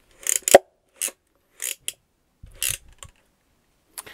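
Hand-held robot claw prop being worked by hand: a series of short plastic clicks and scrapes from its mechanism and corflute claw covers, with the sharpest click about half a second in.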